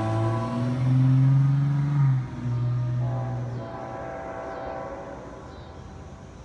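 Hybrid Nathan K5HLL-R2 five-chime air horn on a CSX ET44AH locomotive, sounding a long blast and then, after a brief break about two seconds in, a shorter blast that stops a little before four seconds in. After that only a fainter rumble remains.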